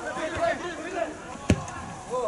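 A single sharp thud of a football being kicked about one and a half seconds in, over players' shouts on the pitch.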